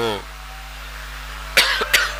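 A man coughs twice in quick succession into a microphone near the end, over a steady low hum. At the very start the tail of his drawn-out spoken word fades out.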